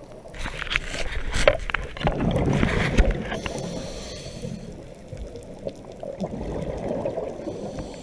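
Scuba diver's regulator breathing heard underwater: a burst of exhaled bubbles gurgling and crackling for about three seconds, a short high hiss, then a steadier low rushing of water.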